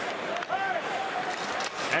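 Hockey arena crowd noise: a steady roar of many voices, with one voice rising faintly above it between about half a second and a second and a half in.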